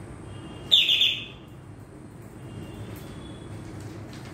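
A bird chirping: one loud, short, high chirp about a second in, with fainter calls before and after it.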